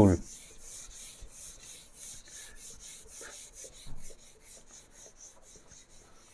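Whiteboard duster wiping marker ink off a whiteboard in quick, repeated back-and-forth strokes.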